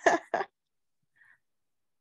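A person's short run of breathy vocal bursts in the first half second, then quiet with only a faint small sound a little after a second in.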